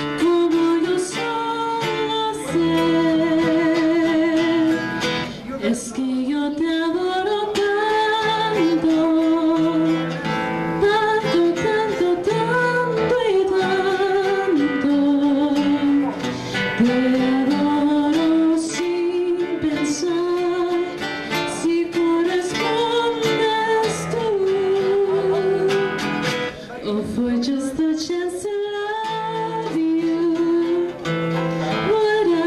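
A young woman singing solo into a handheld microphone, holding her long notes with a wide vibrato, over a steady instrumental accompaniment.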